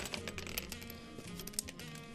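Background music with a quick, irregular run of small sharp clicks and taps: a plastic ballpoint-pen part tossed onto a hard tabletop, clattering as it lands.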